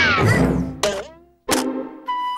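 Cartoon slapstick sound effects: a loud crash with falling whistling sweeps that die away, then two more sharp thunks, just under a second and about a second and a half in.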